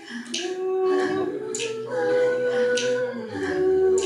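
Live-looped a cappella singing: several women's voices hold layered sustained notes over a low bass tone, with a short snap-like hit repeating about every 1.2 seconds as the beat.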